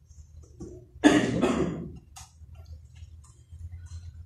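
A single short, loud cough about a second in, over a low steady hum.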